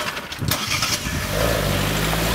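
Car engine starting: a rush of noise, then the engine settles into a steady low running note about a second and a half in.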